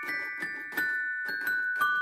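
Mr. Christmas Santa's Musical Toy Chest (1994) playing a Christmas tune: its mechanical figures strike metal chime bars with small mallets, single ringing notes about three a second, each with a dull knock from the mechanism.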